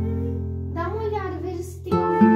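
Background music with an acoustic guitar holding a chord; a short high voice wavers over it near the middle.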